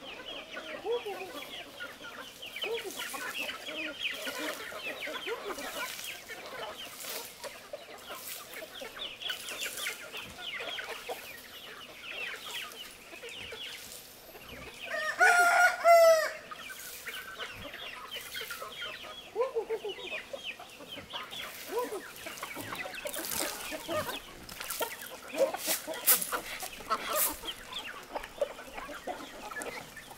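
A flock of free-range chickens clucking steadily while they are fed, with a rooster crowing loudly once about halfway through.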